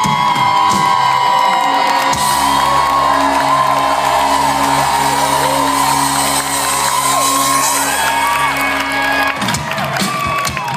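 Live rock band through a festival PA holding a sustained chord that cuts off about nine seconds in, with the crowd whooping and cheering over it.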